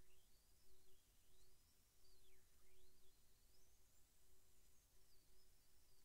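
Near silence: room tone, with a faint high whistle slowly rising and falling.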